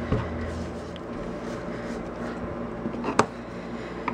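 Foam ink blending tool rubbing Distress Ink over embossed cardstock, a steady scratchy scrubbing, with a single sharp click about three seconds in.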